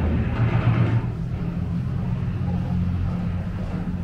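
Steady low rumble with a droning hum, the soundtrack of an exhibit's archive war-film projection playing through the gallery.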